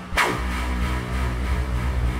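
Access Virus C synthesizer, emulated in software, playing a buzzy sustained patch over a steady low bass note. A new note with a bright attack comes in just after the start.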